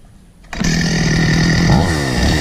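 Stihl two-stroke chainsaw engine comes in abruptly about half a second in, running steadily, then is revved up briefly near the end.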